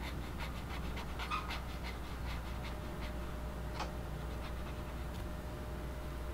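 Ink pen scratching across paper in quick short strokes, about four or five a second for the first two and a half seconds, then a single stroke near four seconds in, as a small shape is filled in solid black.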